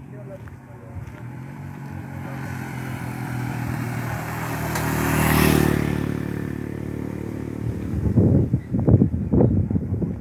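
A motor vehicle approaches and passes close by, its engine growing louder to a peak about halfway through, then fading. From about three-quarters of the way through, wind buffets the microphone in irregular gusts.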